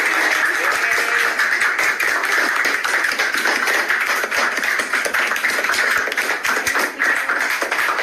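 Music with many people clapping, a dense run of sharp claps throughout.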